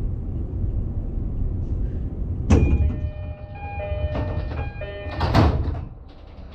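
Commuter train's sliding passenger doors closing: a sudden rush of noise about two and a half seconds in, a short repeating door chime, then a second burst as the doors shut near the end.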